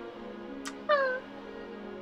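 A blown kiss: a sharp lip smack about two-thirds of a second in, followed by a short, high-pitched falling vocal "mwah", over soft background music with held notes.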